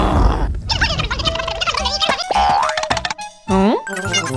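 Cartoon sound effects over music: a low rumble at the start, then a busy run of comic boings and sliding-pitch effects, with a swooping glide near the end.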